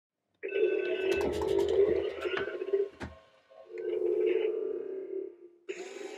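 A remote-controlled Imaginext toy command vehicle's small electric motor whining in two runs of about two and a half seconds each, with a sharp click between them, as buttons on its remote are pressed.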